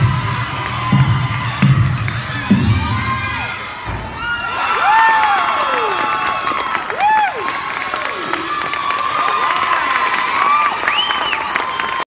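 A crowd of young women cheering and yelling high rising-and-falling 'woo' calls for a gymnastics floor routine, over floor-exercise music with a steady bass beat that stops about four seconds in.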